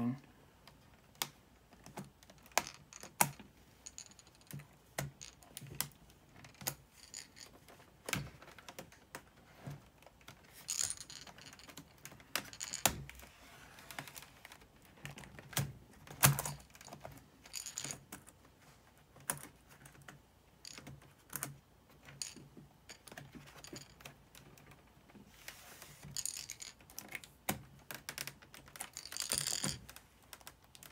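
Small screwdriver prying up the plastic keyboard trim strip of a Dell Inspiron N5110 laptop: irregular plastic clicks and snaps as its clips come loose, a couple of them sharper, with short scraping sounds between.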